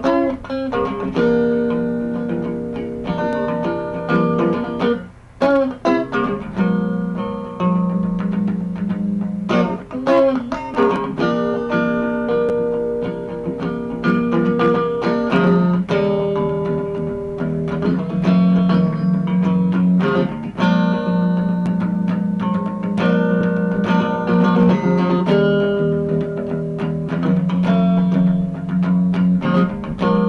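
Instrumental break of a blues song: guitar playing plucked notes over sustained low notes, with a brief drop in loudness about five seconds in.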